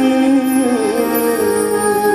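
Live Indian devotional music from a stage ensemble: long held notes that shift and bend in pitch a little under a second in.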